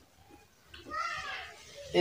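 A person's voice in the background, heard briefly about a second in; the rest is quiet.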